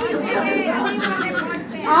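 Speech: several voices talking at once, overlapping chatter.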